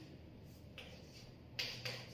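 Chalk writing on a chalkboard, faint, with two short sharp taps of the chalk against the board about a second and a half in.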